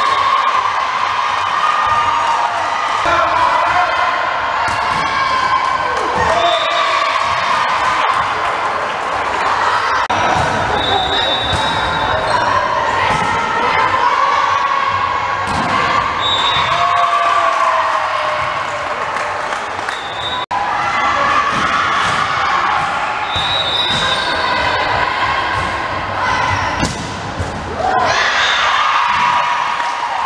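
Volleyball rally in a school gym: the ball is struck and hits the floor again and again while players and spectators shout and cheer throughout. The cheering grows louder near the end as the point is won.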